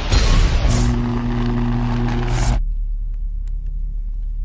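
Sound effects for an animated logo intro: a rumbling whoosh, then a low steady hum-like tone framed by two hissing swishes that cuts off about two and a half seconds in, leaving a low rumbling drone.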